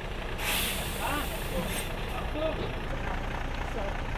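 A truck engine idling steadily, with a short hiss of released air about half a second in, under scattered background voices.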